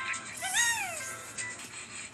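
Film soundtrack music with one short pitched call about half a second in, rising and then falling in pitch.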